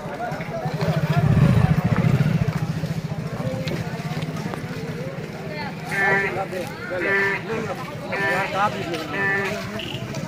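A motorcycle engine running close by with a steady rapid pulse, swelling louder about one to two seconds in, under a crowd of men's voices that call out loudly in the second half.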